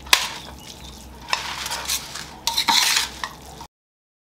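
A fork tossing and stirring wet instant noodles in a stainless steel bowl: a moist stirring sound with sharp clinks of metal on the bowl just after the start, about a second in, and several more near three seconds. It cuts off suddenly just before the end.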